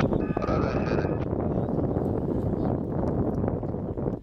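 Wind buffeting the microphone in a steady rough rumble, with the engine of the taxiing Softex V-24 light aircraft running beneath it. A brief steady high tone sounds in the first second.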